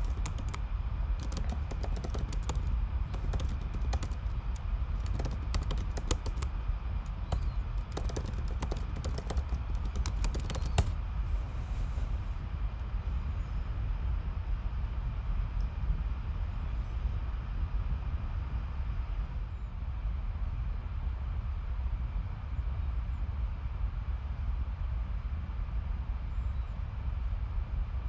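Typing on a computer keyboard: a fast, irregular run of key clicks for about the first ten seconds, then the typing stops and only a steady low background hum remains.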